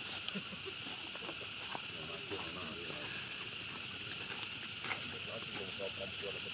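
Outdoor tree-canopy ambience: a steady high-pitched drone, scattered low chattering voices, and a few sharp clicks.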